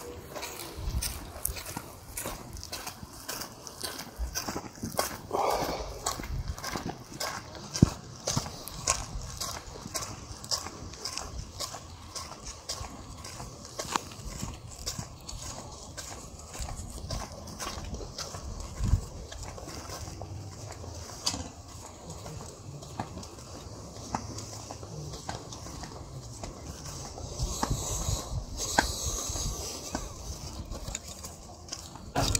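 Footsteps on a gravel and sandy path at a steady walking pace, a regular run of short scuffs and crunches.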